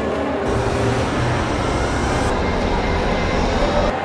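A low, steady mechanical rumble in a dense mix of sounds. It comes in about half a second in and cuts off abruptly just before the end.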